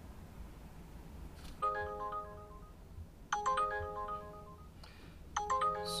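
Uber Eats driver app's incoming trip-request alert sounding from a smartphone: a short melodic chime phrase that starts about one and a half seconds in and repeats three times, signalling a new delivery order to accept or decline.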